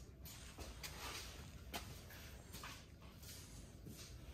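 Faint room tone with a few light clicks and rustles scattered through it.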